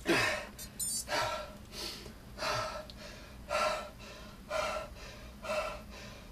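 A man panting hard after an all-out Tabata interval on an upright rowing machine. Heavy open-mouthed breaths come about once a second, the first one loudest with a falling voice.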